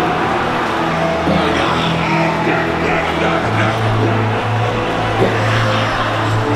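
Loud worship music with held bass chords, a congregation singing and shouting over it; a deeper held bass note comes in about halfway through.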